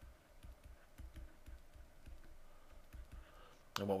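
Faint, irregular tapping and clicking of a stylus on a tablet as handwriting is written out, a few taps a second.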